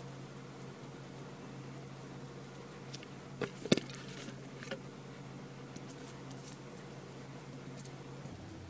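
Paper cutouts being pushed and tapped into place on a tabletop: a few short clicks and rustles a little past three and a half seconds in, one more just before five seconds and lighter ones around six seconds, over a steady low hum.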